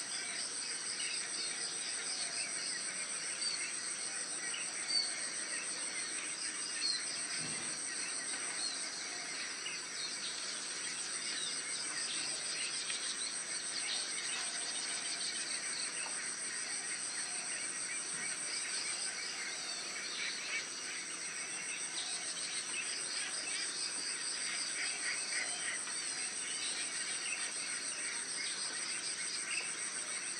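Steady high-pitched insect trilling, with many small bird chirps scattered over it throughout.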